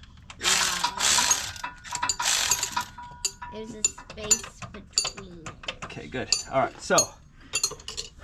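Irregular metal clinks and taps of hand tools and bolts as a differential bracket is bolted up under a pickup truck. Two short rushing noises come in the first three seconds.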